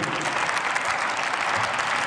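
Steady applause from members of parliament clapping in a large plenary chamber.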